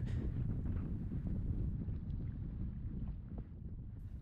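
Gusty wind buffeting a GoPro microphone on a kayak at sea: a low, steady rumble that grows fainter toward the end.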